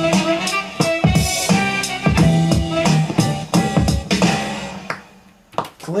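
Electronic beat played from a keyboard and computer: deep kick drums that fall in pitch, crisp hi-hat ticks and held low synth notes. The beat fades out and stops about four and a half seconds in.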